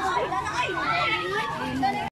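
Many children's voices chattering over one another, high voices talking and calling at once with no single speaker standing out.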